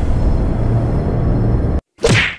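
Cinematic intro sound effect: a loud, low rumble with a hissing wash over it, the tail of a boom, which cuts off suddenly just before the end.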